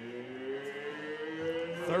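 Stadium voices drawing out a long call of "third down", the held notes slowly rising in pitch toward the end.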